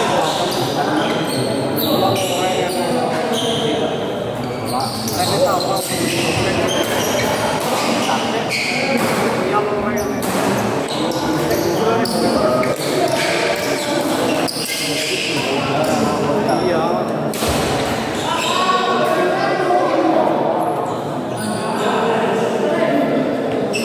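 Badminton doubles rally in an echoing sports hall: sharp racket hits on the shuttlecock at irregular intervals, with footwork on the court and the voices of players and onlookers throughout.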